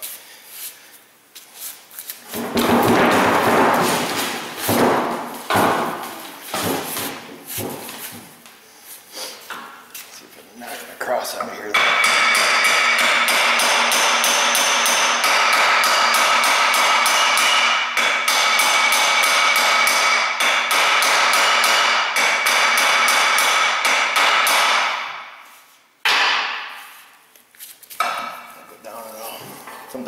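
Hand hammer striking the steel U-joint yoke of a driveshaft to drive the bearing cups through, the metal ringing under the blows. Scattered strikes come first, then a long run of fast, even blows that dies away near the end.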